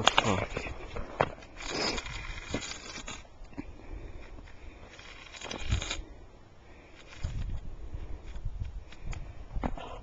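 A stick scraping and crunching through snow as circles are drawn in it. The scraping comes in rough bursts, loudest in the first three seconds and again about six seconds in, then quieter.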